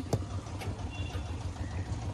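Car engine idling: a steady low rumble with no revving.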